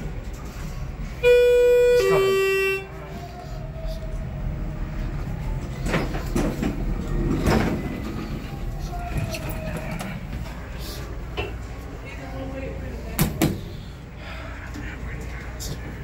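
Schindler elevator's chime sounding two notes, a higher one then a lower one, each about a second long: the falling two-note signal typical of a car set to go down. Then a low steady hum with murmur around it, and two sharp clicks about thirteen seconds in.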